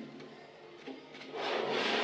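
A cube of small magnetic balls sliding across a tabletop, a rubbing, scraping hiss that starts past halfway and lasts about a second.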